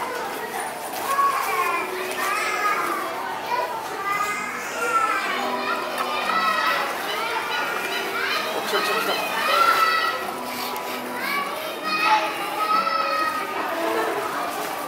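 Children's voices chattering and calling out, several overlapping at once, with some adult talk among them.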